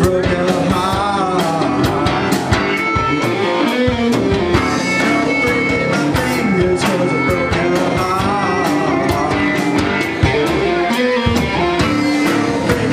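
Live rock band playing amplified: electric guitars, electric bass, fiddle and a drum kit keeping a steady beat.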